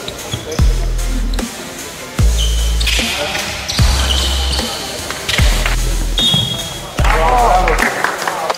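Electronic music with a heavy repeating bass line and sharp drum hits, with a wavering vocal sound near the end.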